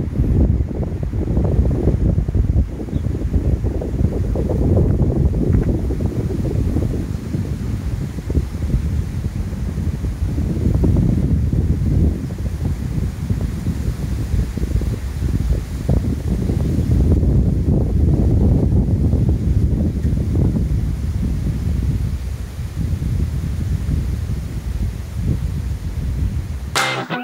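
Wind buffeting the microphone: a loud, gusting low rumble that rises and falls without a break.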